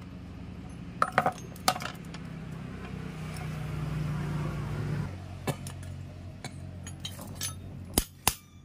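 Light metallic clinks as the steel parts of a scooter's centrifugal clutch shoe assembly are handled and fitted together, with a sharp metal tap right at the end. A low steady hum runs underneath, swelling and then dropping off about five seconds in.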